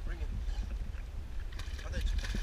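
Lake water splashing and sloshing as a dog swims with a coconut in its mouth, over a steady low rumble.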